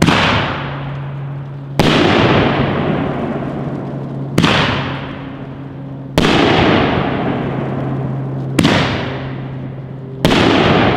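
Nishiki kamuro shells from a 500g firework cake going off: five loud reports about two seconds apart, each trailing off slowly before the next.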